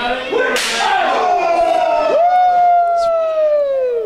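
A sharp smack, typical of a chop to the chest, about half a second in, followed by long, high-pitched 'woo' yells from the wrestling crowd: one held and slowly falling, then a second that rises sharply about two seconds in and slides steadily down in pitch.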